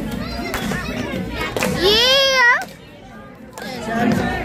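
Children's chatter and shouting in a busy dining room, with one child's high-pitched squeal rising about two seconds in; right after it the noise drops away for about a second before the chatter returns.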